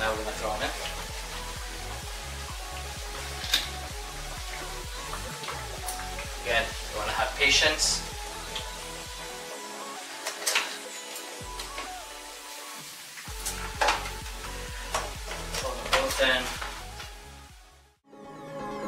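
Background pop music with a steady beat over the hiss and bubbling of a large pot of water at a rolling boil, with several sharp knocks and splashes as a live lobster goes into the pot.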